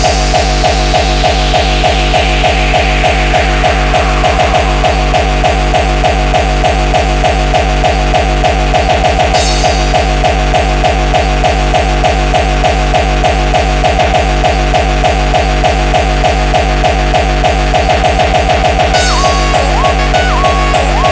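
Speedcore track: a very fast, distorted kick drum beating without a break under a repeating synth riff. A falling sweep runs through the first few seconds, a hissing high layer comes in about halfway, and a stepping higher synth line enters near the end.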